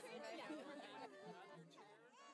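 Faint chatter of several people's voices, fading out.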